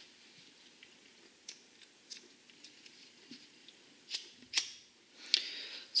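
Scissors snipping through the short strands of 550 paracord to finish an eye splice: a few faint clicks and handling, then two sharper snips a little past the middle.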